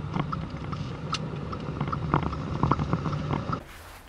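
Vehicle engine and road noise picked up on the move: a steady low drone with scattered clicks and knocks. It cuts off suddenly about three and a half seconds in.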